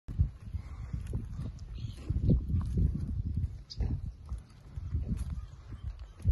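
Hereford bulls walking on bare earth, their hooves thudding irregularly.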